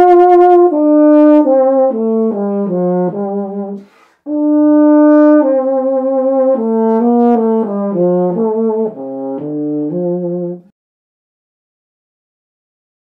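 Besson Prodige BE164 euphonium played solo: a melody of separate notes in two phrases, with a short breath about four seconds in and vibrato on the held notes. The last note stops about a second before the end.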